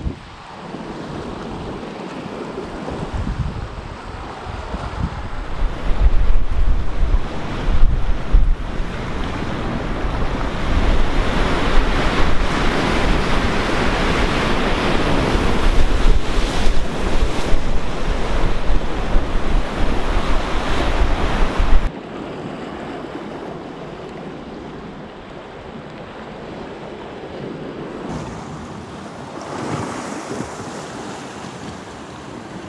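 Ocean surf breaking and washing over shoreline rocks, with wind rumbling heavily on the microphone. It grows louder a few seconds in, then drops suddenly at about 22 seconds to a quieter, steady wash of waves.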